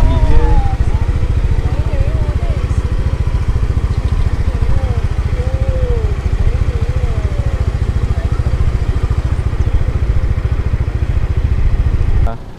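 Heavy wind buffeting on the camera microphone during a motorbike ride, a dense low rumble, with the bike's small engine running underneath. Faint voices come through the wind.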